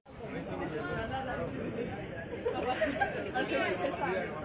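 People's voices talking, the words indistinct, starting just after a brief drop-out at the very beginning.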